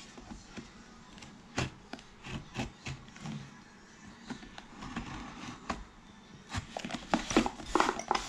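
Kitchen knife cutting the packing tape on a cardboard box: a scattering of short sharp clicks and scrapes, busier and louder near the end.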